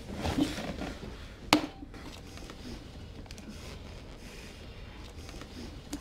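Faint handling of a wallet being opened and searched, small rustles and light clicks, with one sharp click about one and a half seconds in.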